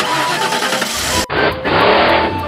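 Cartoon race-car engine sound effect: a sudden loud rush that cuts off abruptly a little over a second in, followed by a lower, steady car engine running.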